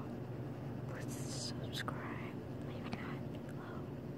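A person whispering softly in short phrases close to the microphone, over a steady low hum.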